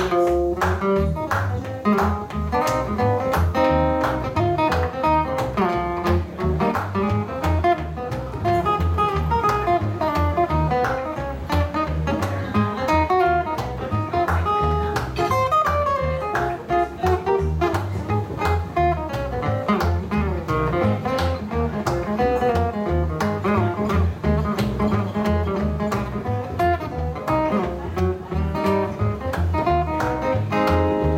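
Live blues band playing an instrumental passage: upright double bass and acoustic guitar, with a steady pulse of plucked strokes.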